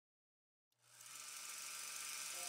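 Dead silence, then a hissing swell starts about three quarters of a second in and keeps rising in loudness, the opening of a production-company logo sound effect.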